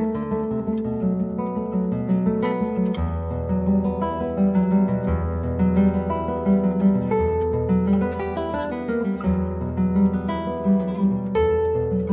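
Solo classical guitar played fingerstyle: plucked nylon strings, with a low bass note changing every second or two under the melody.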